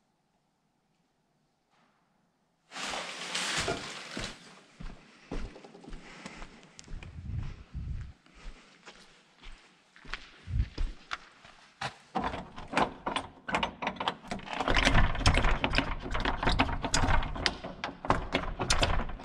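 Near silence for the first few seconds, then footsteps and handling noise with many short knocks and clicks. They grow louder and denser toward the end, into a run of thuds as a shut door is tried and found locked.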